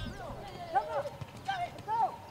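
Several voices shouting short calls across a football pitch, overlapping one another, with a couple of dull thuds.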